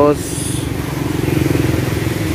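A car engine idling steadily, a low even hum with a fine regular pulse. A brief faint high-pitched chirp sounds about half a second in.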